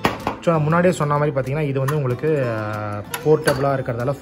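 A man talking, with a few light metal clicks and clinks as a butane canister is handled and fitted into a portable gas stove.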